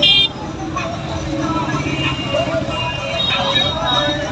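Street-crowd chatter over running vehicle engines, a steady low rumble beneath the voices. A short, loud, high-pitched blast sounds right at the start.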